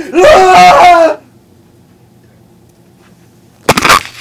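A girl's high-pitched scream, loud and drawn out over the first second, then stopping. A faint low hum follows, broken near the end by a sudden loud burst of noise.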